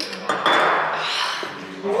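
A woman's long, exasperated sigh: a breathy exhale lasting about a second.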